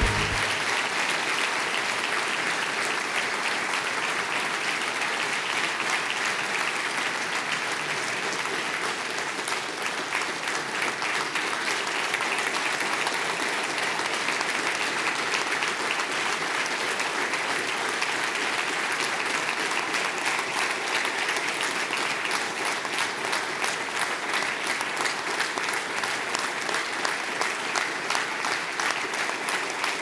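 A large audience applauding, a sustained standing ovation that holds steady throughout, with a slight dip about ten seconds in.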